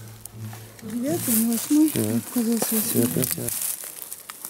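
A man's voice reading off digits, over a rustling, crinkling handling noise from about a second in to near the end.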